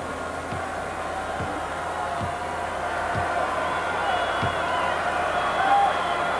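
Steady arena crowd noise with a basketball bounced on the hardwood floor about five times, roughly a second apart: a free-throw shooter's dribbles before the shot.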